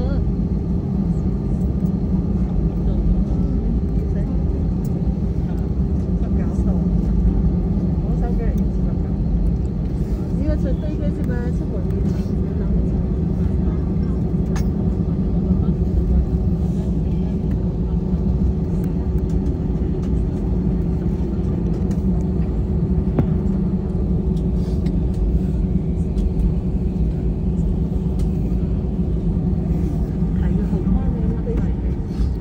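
Jet airliner cabin noise while taxiing: a steady low rumble from the engines at taxi power, with a constant hum over it.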